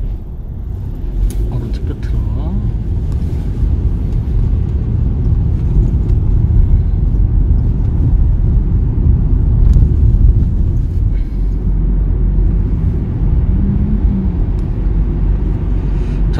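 Inside the cabin of a moving Hyundai compact car: a steady low rumble of engine and tyre road noise, growing louder after about four seconds as the car pulls away from the intersection and gathers speed.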